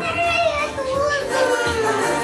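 Young children's voices talking and calling out over music playing in the background.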